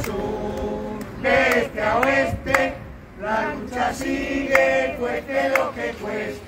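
A small group of men and women chanting a protest slogan together in Spanish, in rhythmic phrases with short pauses between them.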